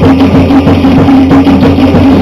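Live Tahitian dance drumming: a percussion ensemble playing a fast, dense rhythm of rapid wooden strokes over a steady held low tone, loud.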